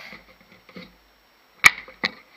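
The plastic angle guide of a Work Sharp knife and tool sharpener is handled and taken off the machine, with soft plastic handling noises. There is one sharp click about one and a half seconds in.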